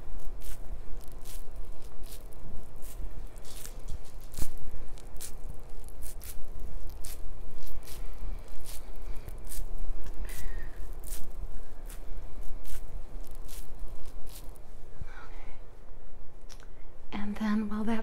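Damp cotton pad being patted close to the microphone in a run of irregular taps, about one or two a second, which stop about three seconds before the end.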